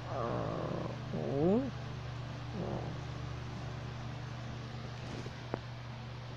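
A person's voice making playful animal-like noises: a falling call, then a louder rising squeal about a second in and a shorter one near three seconds in. A steady low hum lies under it, and there is a single click about 5.5 s in.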